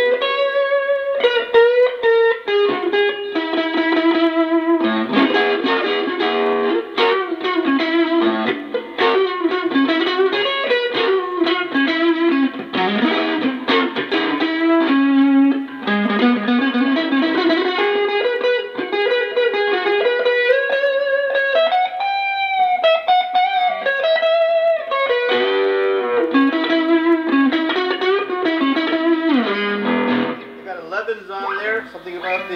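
Xaviere XV-JM offset electric guitar with Jazzmaster-style pickups, played through a Fender Vibro Champ XD amplifier: an unbroken melodic passage of picked notes and chords, with some notes sliding up and down in pitch.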